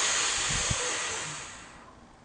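A man forcefully blowing his air out through pursed lips, a steady hiss that fades away near the end as his lungs empty. It is the push stage of a breathing exercise, driving all the air out with the abdominal muscles.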